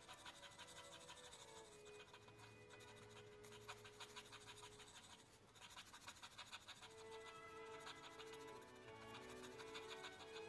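Faint scratching of a 2 mm mechanical pencil's 2B graphite lead on sketch paper, in quick short shading strokes as a dark area is filled in. Soft background music plays underneath.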